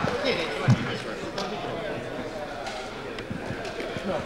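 Several people talking at once, with a single thump under a second in.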